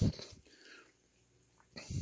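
A man's voice trailing off, then about a second of near silence with room tone, before he speaks again near the end.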